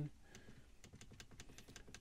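Plastic push button on an appliance's digital clock panel pressed over and over to step the hour setting forward, a quick run of faint clicks at about five a second.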